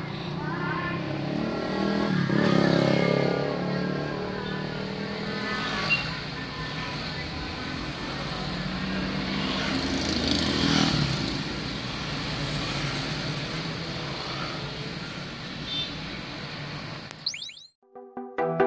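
Car cabin noise: a steady low engine and road hum heard from inside the car, with faint voices in the background. It cuts off suddenly near the end.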